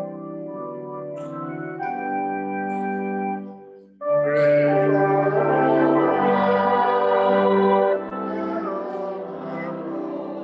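Organ playing a hymn in held chords. It breaks off briefly about four seconds in, then comes back louder and fuller for about four seconds before dropping back to a softer level.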